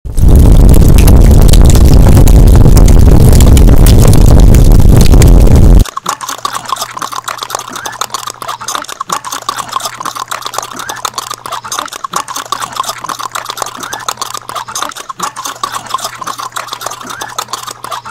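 A deafeningly loud, distorted noise blast runs for about six seconds and cuts off abruptly. A quieter stretch follows, of rapid clicking over a steady low hum.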